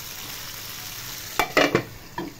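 Chicken legs sizzling in hot mustard oil in a frying pan, a steady hiss. About a second and a half in, the glass lid clatters down onto the pan in a sharp knock and a few quick rattles, the loudest sounds here.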